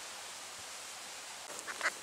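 Quiet woodland ambience: a steady faint hiss, with a few small rustles and clicks near the end.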